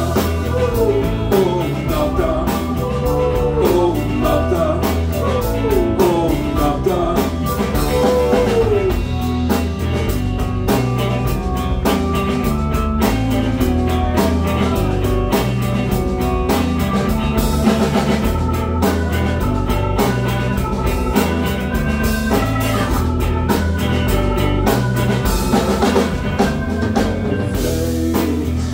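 A rock band playing live: drum kit, electric guitars and bass, with a run of falling pitched phrases over roughly the first nine seconds.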